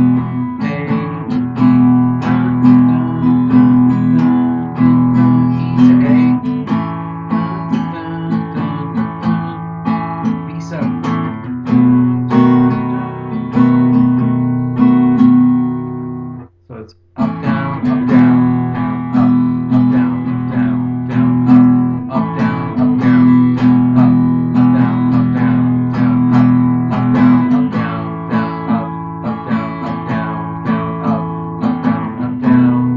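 Acoustic guitar strummed steadily through a basic blues verse progression, A to E and back, ending on B7. The playing breaks off sharply for about half a second about halfway through.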